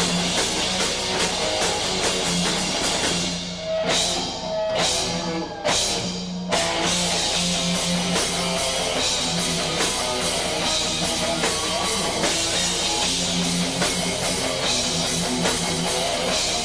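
Heavy metal band playing live, with distorted electric guitars, bass and drum kit. About three seconds in the band thins out to a few sharp accented hits, then comes back in full about six and a half seconds in.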